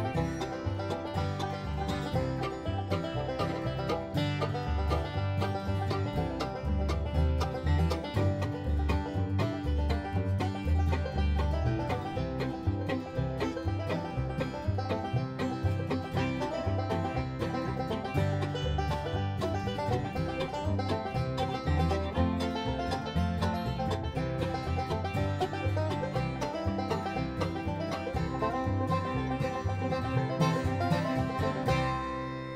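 Background instrumental music in a bluegrass style, with plucked strings led by a banjo, playing steadily throughout.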